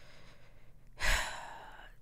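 A woman's breath close to the microphone, starting about a second in and fading away, between spoken phrases.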